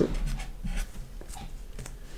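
Marker pen writing by hand, a few short scratchy strokes as it draws a small bracketed number.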